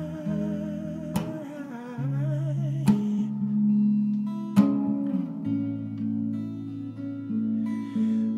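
Electric guitar chords strummed and left to ring, with a new strum about every one and a half to two seconds. A wavering held note runs over the first two seconds.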